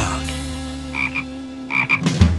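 Cartoon toad croaking in two short double croaks, one about a second in and one near the end, over a held chord of theme-song music raised two semitones in pitch.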